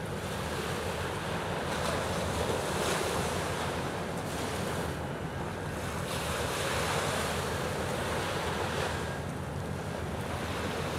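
Wind buffeting the microphone, a low rumble that swells and eases every few seconds, over a steady wash of sea water.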